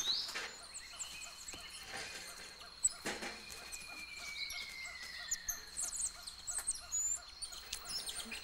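Tropical forest ambience: a steady high insect drone with scattered short, high chirps, and one long whistle gliding slowly down in pitch about three seconds in, just after a sharp click.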